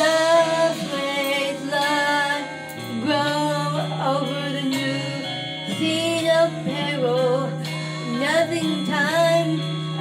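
A woman singing into a handheld microphone over a karaoke-style backing track, her sung lines wavering above steady held bass notes.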